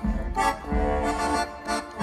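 Live folk band playing an instrumental break between sung verses, an accordion carrying the melody over a steady pulse, heard from among the audience.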